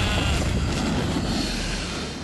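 Cartoon monster's wavering roar trailing off into a low rumble that fades steadily away.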